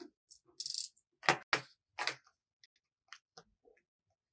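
Craft knife cutting through thin card, a short scraping hiss, followed by three sharp clicks and a few lighter ticks as the card and knife are handled.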